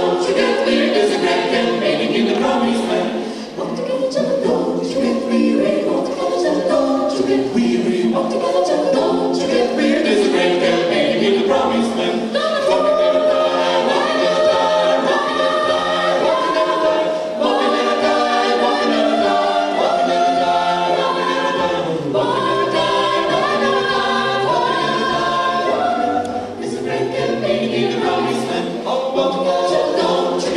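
A mixed a cappella gospel vocal group of men and women singing in harmony through microphones, with no instruments.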